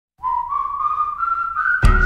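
A whistled melody of single clear notes climbing in steps, then a music track with a steady drum beat comes in near the end.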